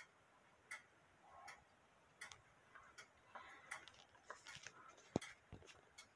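Faint, uneven ticking of several mechanical cuckoo clocks running out of step with one another, with one sharper click about five seconds in.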